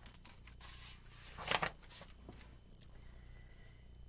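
Pages of a picture book being turned and handled: a few soft paper rustles, the loudest about one and a half seconds in.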